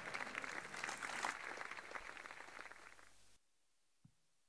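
Audience applauding, dying away over about three seconds and then cut off abruptly.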